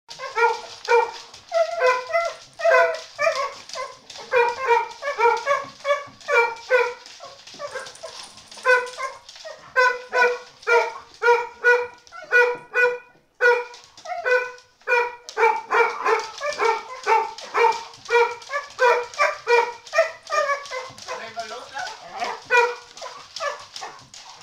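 Welsh springer spaniel barking over and over in short, high-pitched barks, about two or three a second, with a brief pause a little past halfway.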